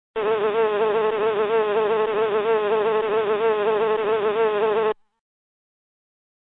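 Bee buzzing sound effect: one continuous buzz with a wavering pitch, lasting nearly five seconds and cutting off suddenly about a second before the end.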